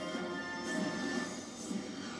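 Skill game machine's bonus-round music, with a short swishing effect about once a second as coin values are collected into the win counter.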